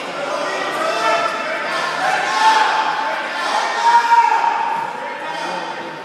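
Several voices shouting over one another, echoing in a gym hall, with the loudest shouts about two and a half and four seconds in.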